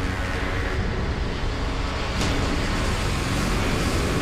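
Dark trailer sound design: a steady low rumble with a sharp hit-like whoosh about two seconds in.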